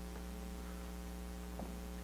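Steady electrical mains hum, a low buzz made of several even tones held at one level.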